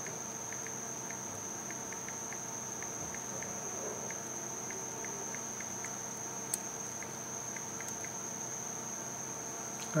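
Faint, quick ticks of typing on a Samsung Galaxy S5's touchscreen keyboard, a few a second, over a steady high-pitched whine, with one sharper click about six and a half seconds in.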